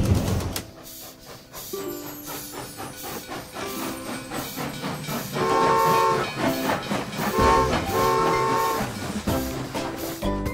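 Cartoon toy-train sound effect: a steady rhythmic clickety-clack of wheels running on track, with a whistle tooting three times in the second half, long, short, long.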